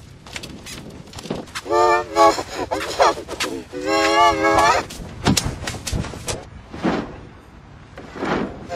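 Effect-processed human voice: two long, wavering yells or cries, one about two seconds in and a longer one about four seconds in, with shorter vocal sounds between them over a steady low background noise.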